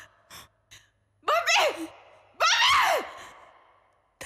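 A person's voice giving two breathy, high-pitched wordless cries about a second apart, each falling in pitch. A few short faint clicks come before them.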